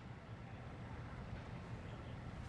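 Faint, steady outdoor background noise with a low rumble, and no distinct club strike or other sudden sound.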